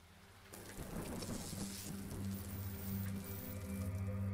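Rain and thunder sound effect: a dense rain hiss that swells about half a second in, with a low rumble, over a low steady musical drone.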